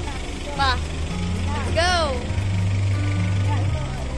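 A vehicle engine idling close by as a low, steady rumble. Two short rising-and-falling vocal calls come in the first half.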